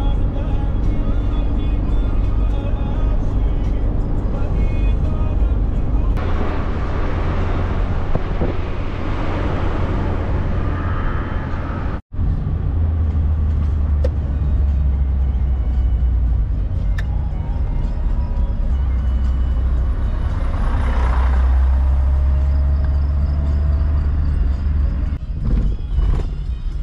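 Steady low road and engine rumble inside a moving car's cabin, with background music over it. The sound cuts out suddenly for a moment about twelve seconds in.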